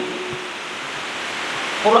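A steady, even hiss filling a pause in speech, growing slightly louder toward the end.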